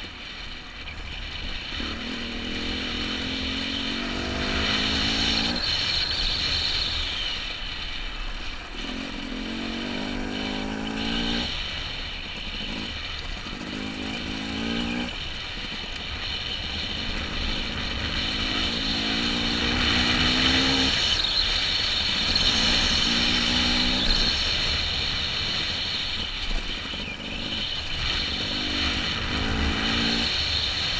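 Dirt bike engine ridden along a trail, its pitch rising under throttle and dropping off again every few seconds, over a steady rush of wind on a helmet-mounted microphone.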